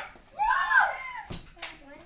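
A child's short voiced exclamation, then two sharp plastic clicks about a quarter second apart as a Nerf foam-dart blaster is handled.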